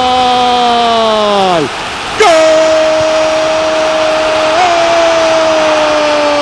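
A football commentator's long held goal cry, 'Gooool!', on one steady pitch that sags and breaks off a little under two seconds in. After a short gasp he takes it up again on a slightly higher held note from about two seconds in.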